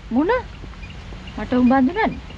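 Dialogue in Sinhala: a short rising-and-falling exclamation near the start, then more speech about a second and a half in.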